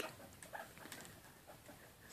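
A few faint, soft sounds from a mother guinea pig and her newborn pup moving about on fleece bedding, otherwise near silence.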